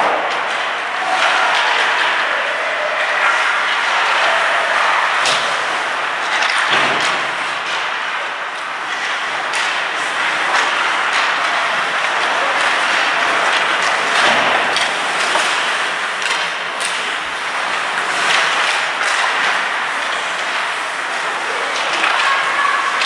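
Ice hockey play in an indoor rink: a steady scraping of skate blades on the ice, broken by frequent sharp clacks and knocks of sticks and puck.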